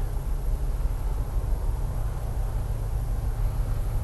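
A steady low rumble with a faint hiss: outdoor background noise.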